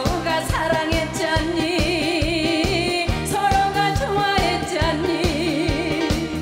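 A woman singing a Korean song into a handheld microphone over band accompaniment with a steady beat, her held notes carrying a wide, wavering vibrato.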